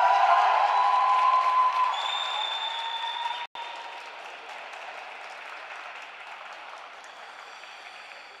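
Audience applause in a large arena with sparse stands. It is loudest at first and fades away steadily, with a shout or two over it in the first couple of seconds. The sound cuts out for a moment about three and a half seconds in.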